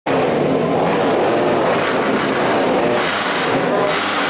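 Several dirt bike engines running at once in a loud, steady mix, their pitches shifting slightly as they rev.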